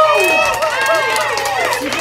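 Several high-pitched voices calling and shouting over one another, with a faint steady low hum beneath.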